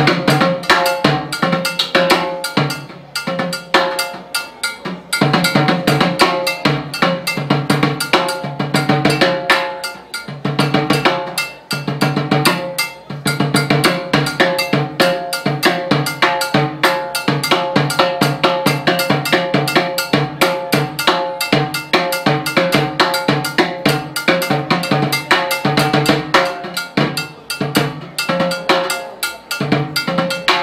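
Solo timbales played with sticks: fast, dense strokes on the metal-shelled drums, cowbell and a red plastic block, the right hand keeping a clave pattern while the left improvises freely. The playing thins out briefly about five seconds in and again around ten to twelve seconds.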